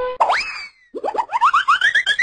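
Cartoon 'boing' sound effects of an animated logo sting. A springy upward swoop just after the start, a brief gap, then a rapid run of short rising chirps that climb higher and higher.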